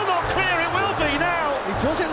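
An excited football commentator's voice over stadium crowd noise, with music playing underneath.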